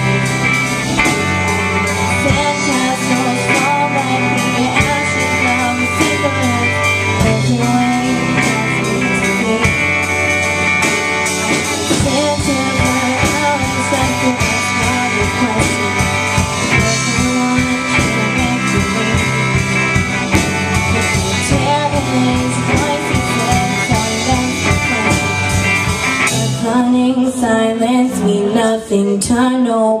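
Live band playing a song: electric guitars, bass and drum kit, with a young woman singing lead through a microphone. About 26 seconds in, the drums drop out and the band holds its last notes.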